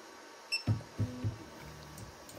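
Creality Ender-3 V3 KE 3D printer starting its auto-leveling and Z-offset routine. About half a second in there is a short high beep. Then the stepper motors move the axes with short pitched hums, settling into a steady low hum near the end.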